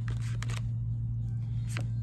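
Tarot cards being handled and drawn from a deck: a few short, crisp clicks and snaps of card stock, over a steady low hum.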